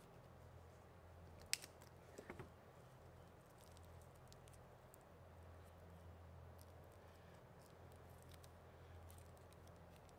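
Near silence over a faint low hum, with one sharp click about one and a half seconds in and a few small ticks just after: clear plastic grafting tape being stretched and wrapped around a mango graft.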